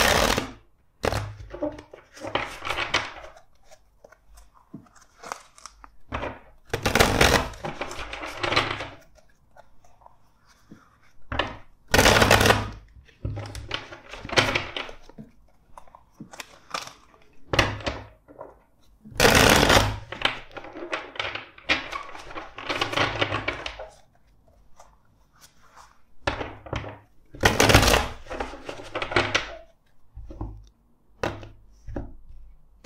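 A deck of tarot cards shuffled by hand: repeated bursts of card rustling with dull knocks, each a second or two long, separated by short pauses.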